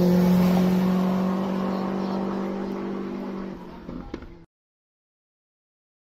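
A rally car's engine holding a steady note as the car drives away after passing, fading gradually, then cut off abruptly about four and a half seconds in.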